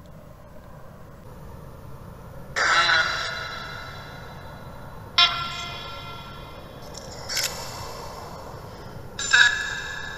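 Necrophonic spirit-box app output: four short, garbled, echoing bursts of sound, each with several pitches stacked together and a long fading tail, spaced two to three seconds apart over steady hiss. The sound is slowed to 90% speed and boosted to 400% volume.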